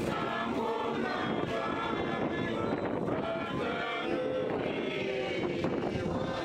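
Traditional Herero group singing: many voices sing together steadily.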